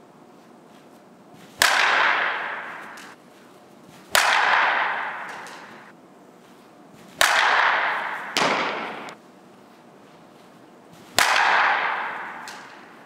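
Softball bat hitting a ball off a batting tee four times, roughly every three seconds, each hit a sharp crack with a long ringing tail. A second, softer knock follows shortly after the third hit.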